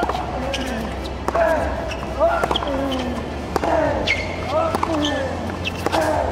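Tennis match sound: a ball struck by rackets and bouncing several times, with voices over it.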